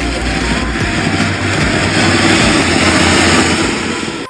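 Ground fountain firework (flowerpot, anar) spraying sparks with a loud, rushing hiss that swells over the first few seconds.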